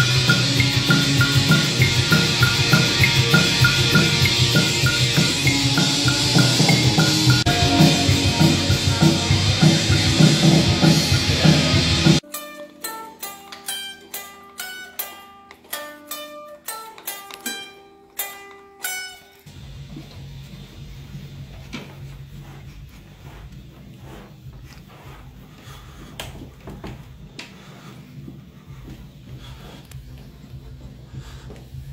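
Loud rock music on electric guitar and drums that cuts off suddenly after about twelve seconds. An electric guitar then picks sparse single notes that ring out, followed by a quieter steady low hum.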